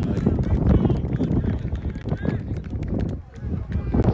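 Wind buffeting the microphone in a steady low rumble, with distant shouting voices of footballers and a run of sharp clicks and knocks through it.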